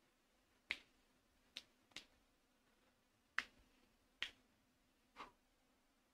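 Six short, sharp clicks at irregular intervals over near silence.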